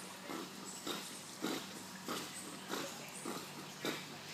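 Chocolate Labrador breathing hard through its nose while swimming with a tennis ball held in its mouth, short puffs of breath roughly every half second.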